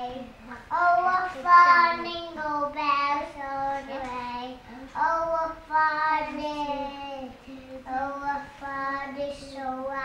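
Young children singing a song in long held notes.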